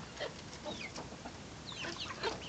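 Young chickens peeping as they feed: a few faint, short, downward-sliding chirps, with several together near the end.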